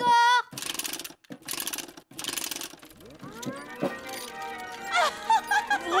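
Cartoon sound effect of a large clockwork key being wound on a toy Ferris wheel: three rasping ratchet bursts in the first two and a half seconds. Then a rising whirr as the clockwork sets the wheel turning, with music.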